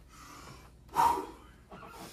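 A man blowing out one short, sharp breath about a second in, with fainter breathing before it.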